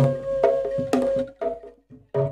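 Javanese pencak silat gending music: a suling bamboo flute holds one long note over sharp ketipung hand-drum strikes. About a second and a half in, the music cuts off abruptly into a short silent break.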